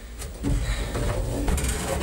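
Handling noise from someone moving close to the microphone: a low rumble with light knocks, and rustling near the end.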